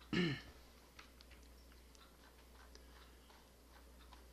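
A man clearing his throat once at the very start, followed by a few faint, scattered clicks of a computer mouse against quiet room tone.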